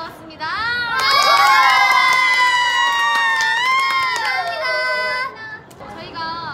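A group of young women shouting and cheering together in high, squealing voices. The many voices overlap and are held for about four seconds, then break off near the end.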